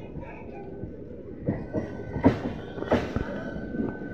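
An ICF electric multiple-unit local train approaching on the track with a steady low rumble. From about halfway in, a few irregular sharp knocks of its wheels on the rail joints come through, and a thin steady whine joins in.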